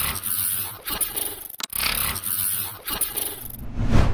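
Glitch-style sound effects of a video logo sting: harsh, scratchy static noise that cuts out abruptly for an instant about a second and a half in, then swells into whooshes near the end.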